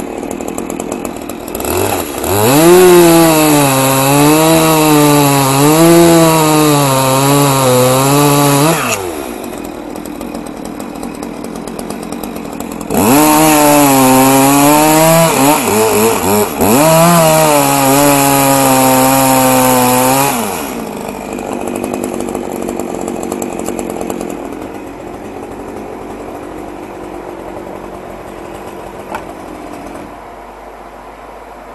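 Two-stroke chainsaw revved up twice for about seven seconds each time, its pitch dipping and recovering as it bites into wood, dropping back to idle in between and afterwards.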